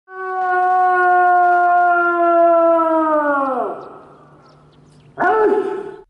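A drawn-out shouted parade command: one long held call that falls in pitch as it dies away after about three seconds, then after a pause a short, sharp second call about five seconds in.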